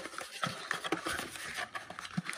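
Cardboard trading-card blaster box handled and turned in the hands: irregular light scrapes, taps and rustles.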